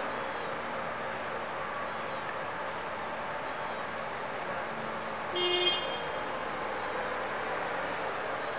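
A forklift horn giving one short toot of about half a second, a little past the middle, over steady background noise.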